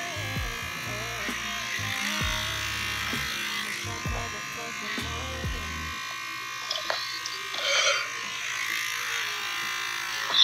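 Electric hair clippers running with a steady buzz while cutting hair, over low bass from background music that stops about six seconds in.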